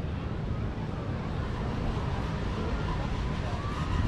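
Outdoor ambience: a steady low rumble with faint voices of people nearby.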